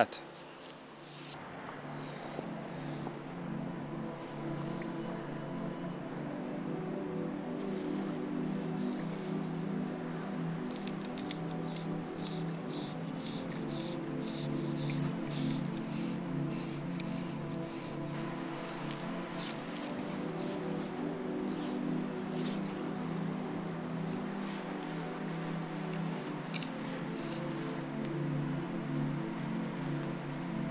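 Background music of slow, sustained chords held steady throughout, with a few faint high clicks in the middle.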